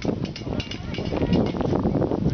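Wind buffeting the camera microphone in a steady low rumble, with spectators chatting faintly.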